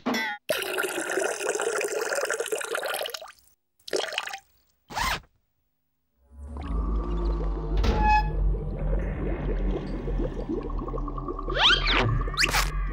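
Cartoon sound effects and music. A sweeping effect runs for about three seconds, followed by two short bursts and a moment of silence. From about six seconds in, a low rumble plays under music.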